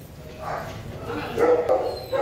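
Dogs whining and yipping in a few short calls, the loudest about one and a half seconds in.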